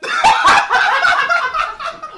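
Young man snickering and giggling with his hand over his mouth, stifled laughter in short, choppy bursts.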